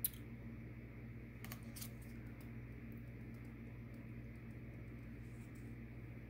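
Faint handling of tarot cards as one is drawn from the deck: a sharp tick at the start, a couple of brief swishes about a second and a half in, then small scattered ticks, over a steady low hum.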